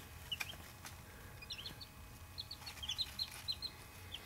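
About three-day-old Buff Orpington and Bantam chicks peeping: faint, short, high-pitched peeps in scattered clusters, several chicks at once near the end.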